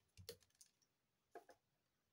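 Faint light clicks of tweezers and fingertips on a plastic sheet of self-adhesive gems: a few just after the start and two more around a second and a half in.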